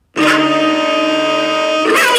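Cartoon music sting: one loud, steady held chord that starts abruptly and cuts off sharply just before the end.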